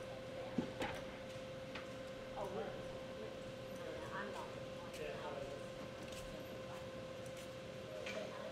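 Quiet arena room tone: a steady electrical hum with faint distant voices and a few small clicks, and one sharp knock about half a second in.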